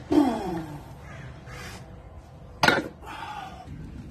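Barbell deadlift reps: a strained grunt with falling pitch as the lifter locks out the bar, then one loud, sharp knock about two and a half seconds in as the loaded barbell is set back down on the ground.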